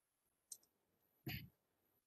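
Near silence broken by a faint, sharp click about half a second in, a computer keyboard keystroke, and a second short, faint sound just over a second in.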